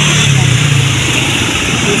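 Road traffic: a motor vehicle's engine running close by, a low steady hum that fades about a second in, over constant street noise.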